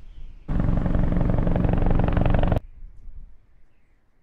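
Helicopter rotor sound effect, a loud rapid chopping that cuts in suddenly about half a second in and stops just as suddenly about two seconds later.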